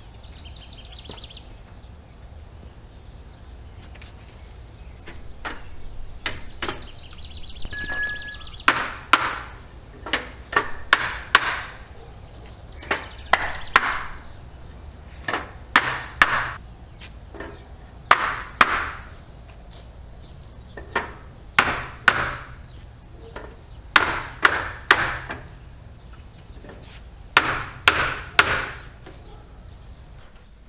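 Hammer blows on a wooden block held against a steel rack frame, knocking apart the frame members whose welds have been ground out. The sharp knocks come in groups of two or three, starting about a quarter of the way in and repeating until near the end, with a short metallic ring just before they start.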